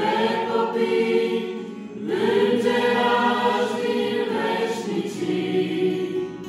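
A mixed youth choir singing a hymn in unison, accompanied by an acoustic guitar, with a short break between lines about two seconds in.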